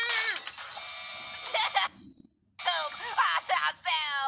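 Aluminium drink can crushed flat under a hydraulic press: a dense crunching, grinding noise for nearly two seconds that cuts off suddenly. After a brief silence a high-pitched, sped-up cartoon voice starts up.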